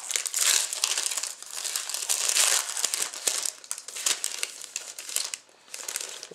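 Wrapper of a 2010-11 Zenith 'Dare to Tear' hockey card being crinkled and torn open by hand, a dense crackling with many small snaps that stops about five seconds in.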